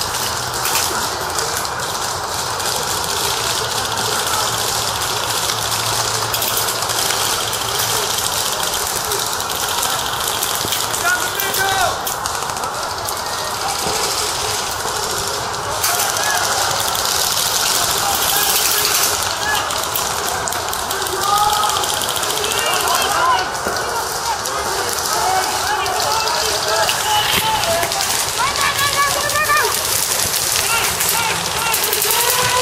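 Players' voices shouting at a distance, unintelligible, over continuous rustling and wind noise on a moving microphone.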